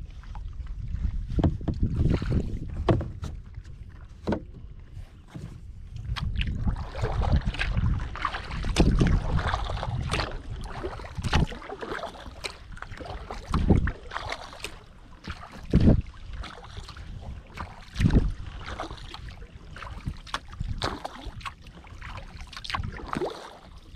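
Kayak paddle strokes dipping into the water with splashes and dripping from the blades at a steady pace, about one stroke every two seconds, over a low rumble of wind on the microphone.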